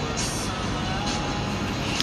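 Steady background noise with faint music playing, and a short hiss just after the start.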